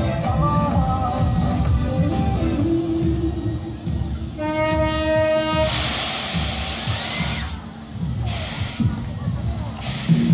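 Fairground ride sound system playing music over a low rumble, then a horn sounding a single steady note for a little over a second. Right after it comes a long loud hiss as the ride blasts out a jet of smoke, and a second, shorter hiss follows about three seconds later.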